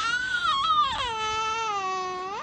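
A toddler's drawn-out wail: the voice rises steeply at the start, breaks briefly about half a second in, then is held long at a nearly steady high pitch.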